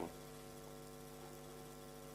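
Steady electrical mains hum: a faint set of fixed low tones with no other sound.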